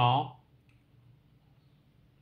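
A man's narrating voice finishing a word, then a pause of faint room tone with a low steady hum and one small click a little under a second in.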